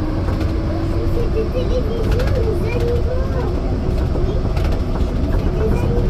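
Rennes metro line B train (Siemens Cityval) running between stations, heard from inside the car: a steady low rumble with a faint whine that rises slowly in pitch, under passengers' voices.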